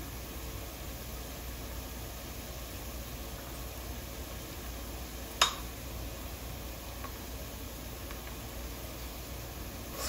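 Faint steady hiss with a low hum, broken once about five seconds in by a single sharp click of a spoon against cookware.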